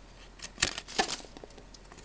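Stiff trading cards being flipped and slid across one another in the hands, making a few short snaps and rustles, the sharpest a little over half a second in and again about a second in.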